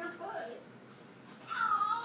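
Two high-pitched vocal calls that bend in pitch: a short one at the start and a louder, higher one near the end.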